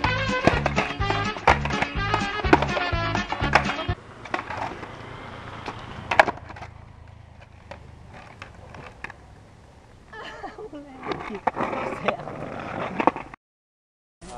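Music with a steady beat stops about four seconds in. Then a skateboard knocks on concrete pavement, with one sharp crack about six seconds in. A man's short exclamation comes near the end, and the sound cuts to silence just before the end.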